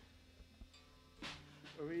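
Faint electric guitar note held steady through the amplifier as the guitarist works at the tuning pegs, with a man starting to speak near the end.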